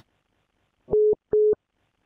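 Two short beeps of one steady mid-pitched tone about a second in, coming through the call audio as a telephone line or calling-app signal tone.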